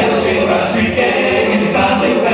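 A small mixed vocal group of men and women singing together in harmony into handheld microphones.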